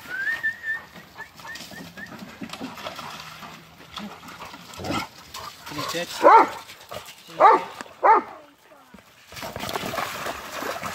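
Dog barking three loud, sharp barks about a second apart, then splashing through shallow water near the end.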